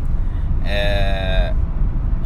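A man's drawn-out hesitation sound, a held low 'uhh' lasting under a second, over a steady low vehicle rumble.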